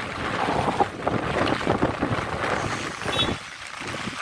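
Floodwater splashing and rushing, with wind buffeting the microphone. A brief high chirp comes about three seconds in.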